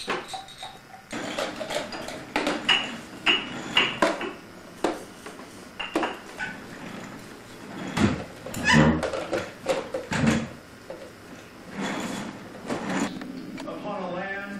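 A baby's short squeals and babbling sounds mixed with repeated sharp knocks and clatter.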